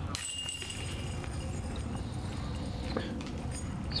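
Disc golf putt striking the basket's chains: a brief, faint metallic jingle just after the start, over a steady low outdoor background.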